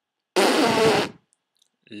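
A man blowing a raspberry with his lips: one loud, sputtering mouth noise, just under a second long, beginning about a third of a second in, between sung 'lolly' notes.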